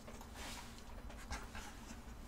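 A dog panting faintly, over a low steady hum.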